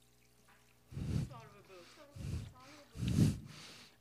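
Water from a plastic pitcher splashing into a plastic foot-bath basin in three short pours about a second apart, topping up a hot foot bath. Faint speech comes between the pours.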